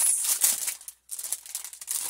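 Clear plastic packaging around a set of makeup brushes crinkling and rattling as it is handled, in two stretches with a brief break about a second in.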